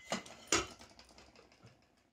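Two light knocks, the second and louder about half a second in, followed by faint scraping that fades away: a silicone spatula working against a nonstick kadhai.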